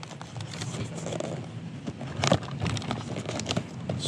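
A small cardboard product box being handled and pried open: light rustling and scraping of card and packaging, with a couple of sharp clicks about two and three and a half seconds in.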